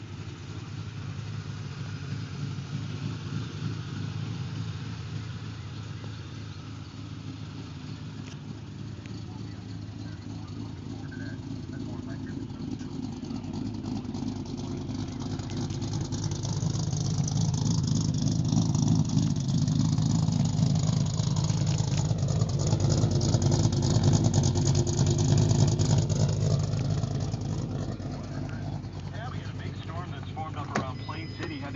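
Modified 2005 Mustang idling with a thumping cam sound from aftermarket Hot Rod Cams camshafts, heard through an SLP Loudmouth exhaust. It grows louder through the middle and eases off near the end.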